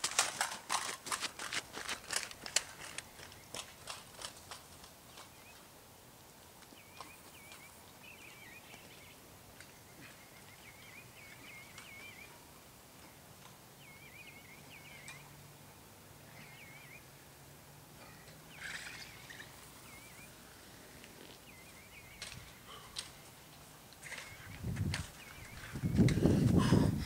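Running footsteps on dirt and gravel, a quick run of thuds fading away over the first few seconds. Then quiet open-air ambience with a bird chirping now and then, and louder thuds and scuffing return near the end.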